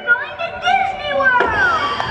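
High-pitched voices with sliding, gliding pitch and no clear words, including one long falling glide about halfway through, over faint music.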